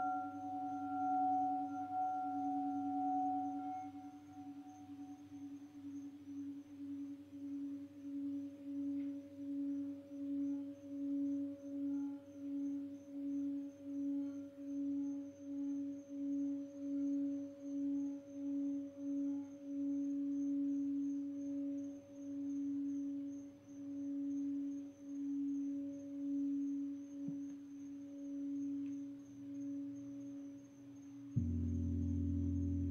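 Clear quartz crystal singing bowl ringing one low sustained tone with a slow, even pulsing beat, about one swell a second. Its higher overtones fade out in the first few seconds, leaving the single pulsing tone.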